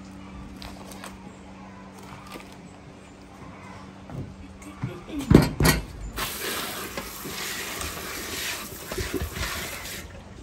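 A tap running into a sink as hands rinse vegetables under the stream, starting about six seconds in. Just before it, a few knocks and bumps of handling, the loudest a little after five seconds.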